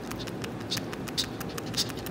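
A gray squirrel chewing close up on a piece of food held in its paws: crisp, irregular crunches, about two or three a second.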